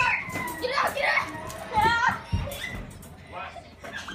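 A young child's high-pitched, wordless squeals of excited play: three loud cries in the first two seconds, then quieter vocal sounds, with a low thump a little after two seconds.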